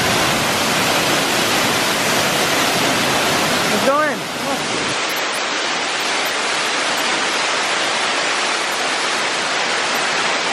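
A waterfall pouring steadily over rockwork, a loud, even rush of falling water. It drops a little in level and loses some of its hiss about four seconds in.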